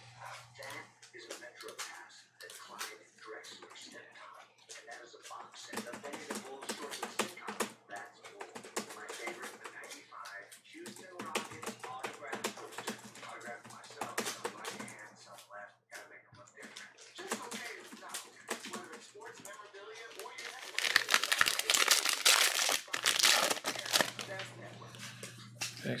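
Trading cards and a Panini Crown Royale foil pack being handled, with scattered clicks and rustles, then a few seconds of loud foil crinkling and tearing near the end as the pack is opened.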